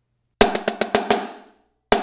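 Marching snare drum played with sticks: a five-let figure of accented, flammed strokes, a quick run of about seven sharp strokes, played twice, first about half a second in and again near the end.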